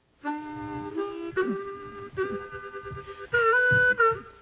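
Harmonica playing held notes and chords from a 1942 field recording being played back, starting about a quarter second in and getting louder near the end.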